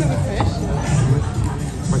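Background music playing under the chatter of voices in a busy restaurant dining room.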